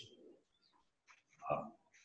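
Near silence in a pause between sentences, broken about one and a half seconds in by a man's short hesitant "uh".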